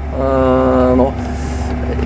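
CLAAS Axion 830 tractor's six-cylinder diesel engine running as a steady low drone while pulling a seed drill, heard from inside the cab. A man's voice holds one long drawn-out word over it for about the first second.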